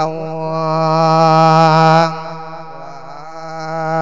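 A Thai monk's voice singing a thet lae sermon: he holds one long, steady note that falls away about two seconds in, then carries on with a softer held tone that swells again near the end.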